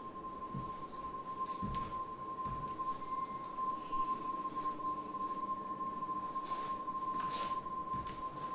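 A single steady, high pure tone, with a fainter lower tone beneath it. A few soft low thumps come in the first three seconds, and a brief soft hiss comes near the end.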